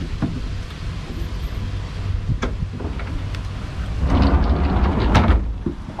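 Slide-out cooler seat being pulled out from under a boat's leaning post: a few sharp clicks, then a louder scraping slide about four seconds in.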